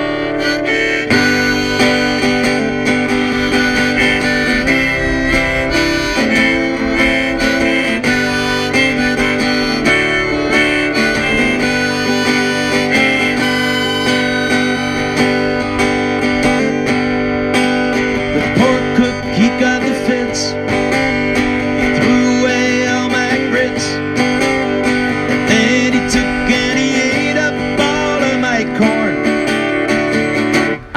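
Harmonica played in a neck rack over a strummed acoustic guitar, an instrumental stretch of a song.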